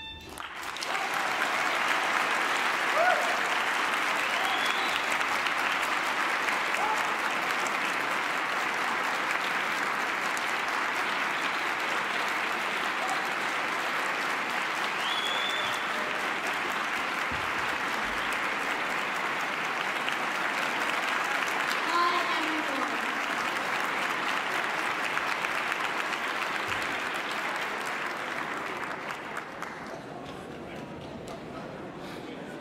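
Long, steady applause from a large seated audience in a ballroom, with a few brief cheers rising above it; it swells up at the start and tapers off near the end.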